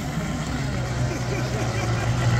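Steady low drone of gas-powered 1/6-scale radio-controlled hydroplane engines running, with faint voices in the background.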